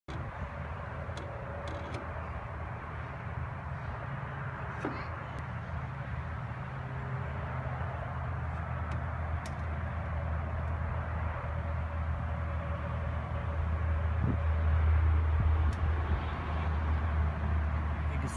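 Steady low outdoor background rumble, growing louder toward the end, with a few faint clicks.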